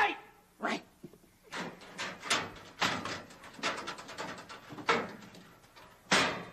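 Irregular knocking and clattering, as of gear being handled at a metal locker, with a few short vocal noises in between.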